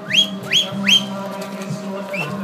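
Three short whistles, each sliding upward, in quick succession about a third of a second apart in the first second, over a steady low drone.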